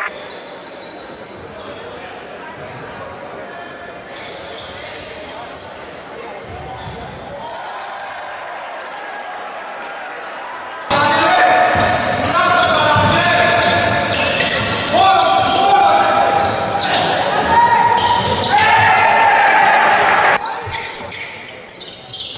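Indoor basketball game sound: a ball bouncing on a hardwood court, with faint voices in a large hall. About halfway through it suddenly gets much louder, with many voices holding long pitched notes that step up and down.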